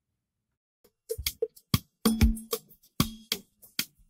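An AI-separated drum stem from Studio One 7 playing back. It is silent for about the first second, then kick, snare and percussion hits come in as a groove. The separation is not the cleanest, with a flanger-like artifact on the drums.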